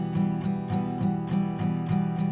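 Acoustic guitar strummed in steady down strums, about four a second, ringing on an E minor chord.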